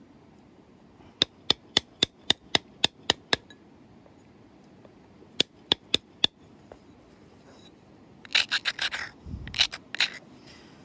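An antler tool working the edge of a large flint preform: a run of light, sharp clicks about four a second, a shorter run of four more, then a quick scraping flurry and one last sharper click near the end.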